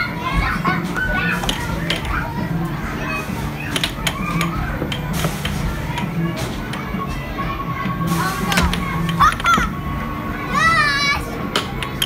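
Air hockey puck clacking sharply and often against the mallets and table rails in fast play, over a busy arcade din of children's voices and game-machine music. A steady electronic beep sounds from a machine in the second half.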